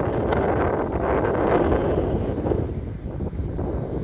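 Wind buffeting the microphone: a steady low rumble that eases a little about three seconds in.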